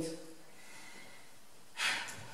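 Quiet hall tone after a spoken line ends, broken near the end by one short, sharp intake of breath, like a sniff or gasp, just before speaking resumes.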